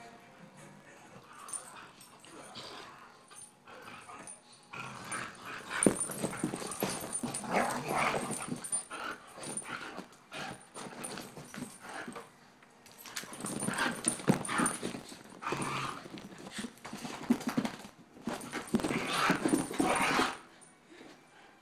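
A greyhound and a poodle play-fighting, with dog vocal noises and scuffling that come in three louder bouts: about five to nine seconds in, around fourteen seconds, and just before the end.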